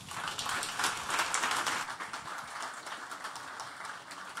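Audience applauding, loudest in the first couple of seconds and then tapering off.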